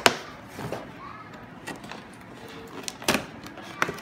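Cardboard doll box being handled on a table: a few sharp knocks and scrapes of the packaging, at the start, about three seconds in and again shortly before the end.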